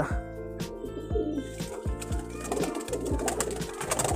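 Domestic pigeons cooing in a loft, over background music with a steady beat.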